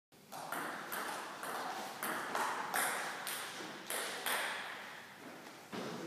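Table tennis rally: the ball clicking sharply off the bats and the table about twice a second, each hit ringing on in the hall's echo. The rally ends about four seconds in.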